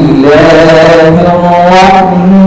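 A young man's voice reciting the Quran in the melodic tilawat style, holding long drawn-out notes that waver gently in pitch.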